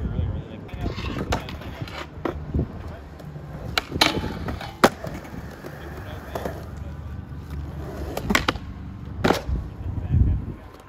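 Skateboard wheels rolling on smooth concrete with a steady low rumble. Several sharp clacks of boards striking the ground are spread through it, the loudest a few seconds in.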